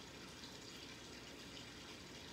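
Faint, steady background hiss with no distinct sound standing out: room tone.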